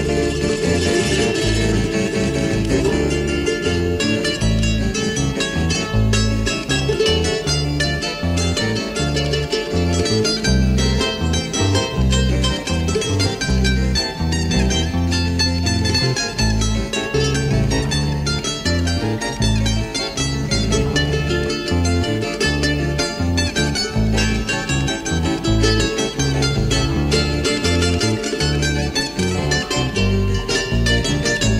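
Bolivian charango music: a charango plays a quick melody of plucked notes over a deeper bass line that moves from note to note.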